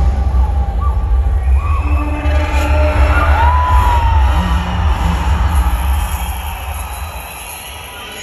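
Loud stage music with a heavy bass, with a crowd cheering and shouting over it; the bass falls away and the sound gets quieter near the end.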